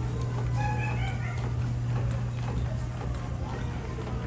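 Steady low hum of the boat ride's machinery, heard with the show music switched off. About half a second in there is a brief high-pitched call over faint chatter from riders.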